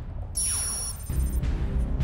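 Game-show sound effect revealing the accumulated scores: a falling whoosh with a bright, high ringing tone lasting about half a second, followed by a background music bed with a steady bass.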